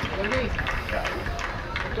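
Shouting voices of youth footballers and coaches on the pitch, in short calls over a steady low background noise.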